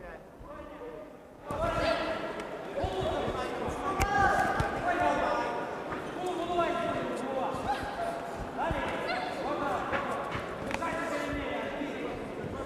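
Several voices shouting across a large hall during an amateur boxing bout, with sharp thuds of punches and footwork on the ring canvas. It starts fairly quiet and the shouting sets in about a second and a half in.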